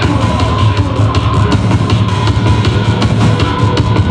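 Loud live industrial techno played on synthesizers: a heavy bass line under a steady, driving beat.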